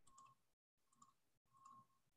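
Near silence: room tone with three faint clicks spaced across the two seconds.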